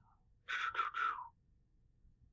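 A brief, quiet human voice sound of about three short syllables, starting about half a second in and breathy rather than full-voiced; otherwise near silence.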